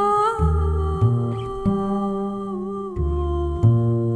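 Music: a woman's wordless voice holding one long note, easing slightly lower near the end, over a double bass plucking a slow line of low notes.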